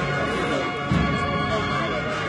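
Processional band music accompanying a Holy Week float: brass playing sustained chords over drums, with a loud low drum beat about a second in.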